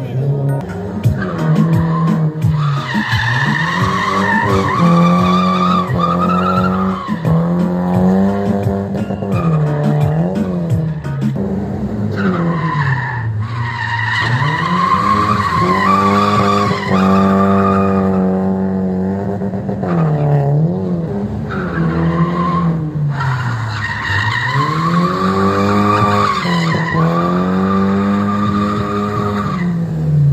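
A BMW 318i E36's four-cylinder engine held high in the revs while drifting. Its pitch drops and climbs back every few seconds, and the tyres squeal loudly over it.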